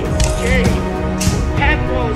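Background music with short vocal-like phrases that bend up and down in pitch.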